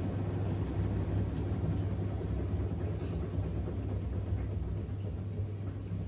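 Front-loading washing machine in its wash cycle: the drum turning with water and laundry inside, a steady low hum and rumble from the motor and drum with water swishing against the door glass.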